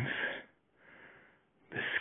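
A man's audible breath between phrases, one soft exhale about halfway through, while he walks uphill through snow.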